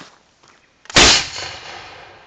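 A PVC spud gun firing: one loud bang about a second in, followed by a fading rush of echo over the next second.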